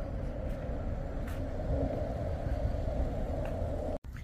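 Steady rumble of road traffic, even in level with no distinct events.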